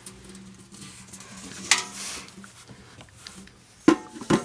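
Apples dropped into a small stainless-steel trash can: one thud with a short metallic ring about halfway through.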